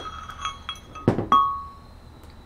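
Steel gears and carrier parts of a Wheel Horse transaxle's differential clinking against each other as they are taken apart by hand. A few light metallic clinks, each with a short ring, with the loudest two close together about a second in.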